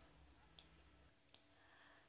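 Near silence with a faint low hum, broken by two very faint short clicks, one about half a second in and one a little after a second.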